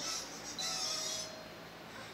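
A sound effect from a children's TV show heard through the television's speaker: a short high hiss, then a longer, louder one about half a second in, with faint steady tones beneath.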